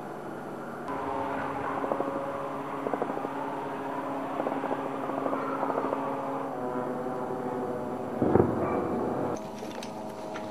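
A steady engine drone made of several held pitches, shifting in pitch about two-thirds of the way through, with one loud thud about eight seconds in.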